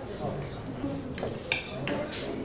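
Cutlery and plates clinking at a dinner table, with two sharper clinks about a second and a half in, over a murmur of conversation.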